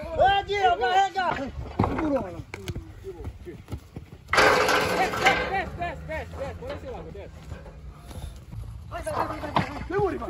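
People shouting in raised, high-pitched voices. A loud, sudden noisy burst lasting about a second comes about four seconds in.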